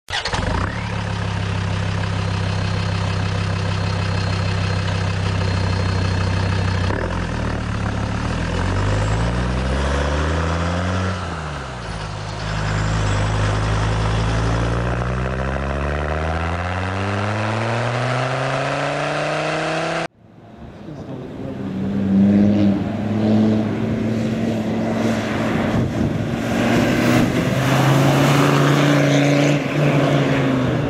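An engine running, revving down and up and then climbing steadily in pitch, cuts off suddenly about two-thirds of the way in. After a quick fade-in, a Land Rover Defender 90's Td5 five-cylinder turbodiesel is heard driving on a dirt track, its note rising and falling.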